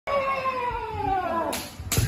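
A kendoka's long drawn-out kiai shout, its pitch falling slowly, followed near the end by two sharp impacts.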